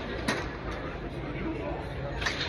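Indoor driving range ambience in a reverberant dome: a steady wash of room noise and background voices. About a quarter second in comes a sharp click, a golf ball being struck at another bay.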